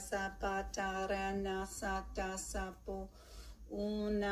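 A voice praying in tongues: rapid repeated nonsense syllables, about four or five a second, chanted on one steady pitch, with a short break about three seconds in.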